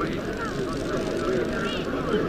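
Indistinct crowd chatter, many voices overlapping at once with no clear words, over a low rumble.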